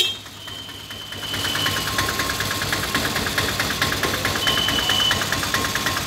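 A small engine idling nearby, with a steady rapid pulse that sets in about a second in. Two brief high-pitched tones sound over it, one early and one later.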